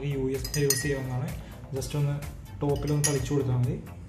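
Metal spoon clinking several times against a glass jar and plate, over background music.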